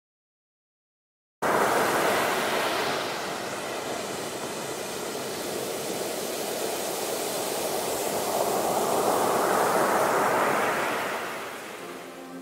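Ocean surf: waves breaking and washing in. It starts abruptly after about a second and a half of silence, eases, swells again to its loudest later on, and fades toward the end.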